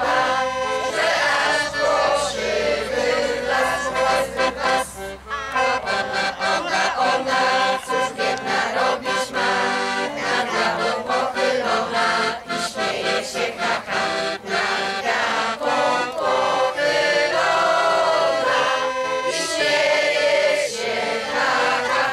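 A group of children and adults singing a song together outdoors, accompanied by a piano accordion playing sustained chords with a rhythmic beat.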